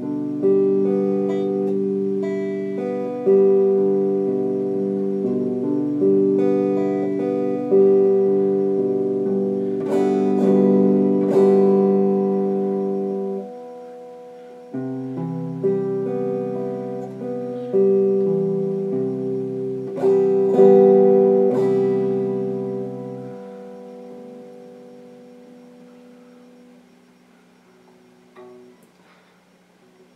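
Electric guitar playing slow, ringing chords built around a G6 voicing, in two phrases with a few sharper strums, the second phrase left to ring and fade out near the end.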